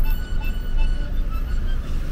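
Steady low rumble of a taxi's engine and tyres heard from inside the cabin while it drives, with music playing over it.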